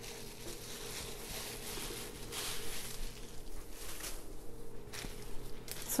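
Thin plastic bags being handled, giving soft, irregular rustling and crinkling.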